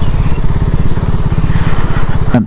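Motorcycle engine running at low revs, an even rapid pulse, as the bike creeps along at walking pace.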